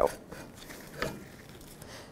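Old front brake caliper being slid off its mounting bracket. It is mostly quiet, with one faint short metal knock about a second in.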